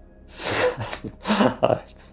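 A man laughing in three quick, breathy bursts.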